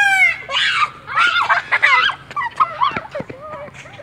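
Children's excited, high-pitched voices and shouts, loudest in a long call at the start and growing fainter toward the end.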